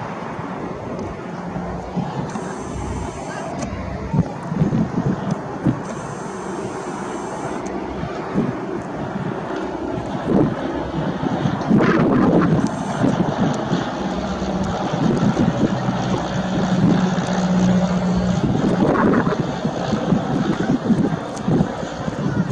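Cessna 172M light aircraft's single piston engine and propeller flying past, a steady low drone that comes through strongest in the second half. Heavy wind buffeting on the microphone runs under it throughout.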